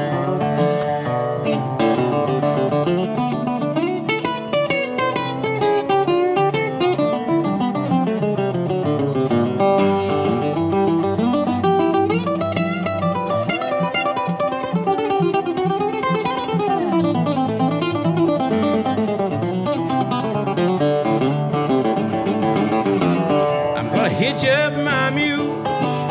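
Instrumental break played on two resonator guitars: a Brazilian rosewood Scheerhorn played lap-style with a steel bar, its notes sliding up and down, and an unplugged National Pioneer RP1 picked alongside it.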